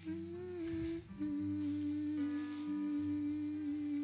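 Soft background music of long held notes over a low sustained bass, the top note shifting to a new pitch about a second in and again shortly after.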